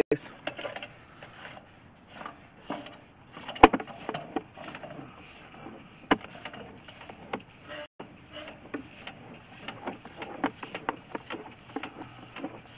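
Sewer inspection camera's push cable being fed by hand into a 3-inch ABS drain line, with irregular clicks and knocks as the cable and camera head move through the pipe; the sharpest knock comes about three and a half seconds in, another at about six seconds.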